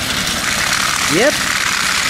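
Battery-powered TrackMaster Ferdinand toy locomotive running steadily along plastic track, its small motor and gears whirring with a rattle of wheels and wagons.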